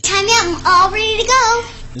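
A young girl singing a short, high, wavering phrase.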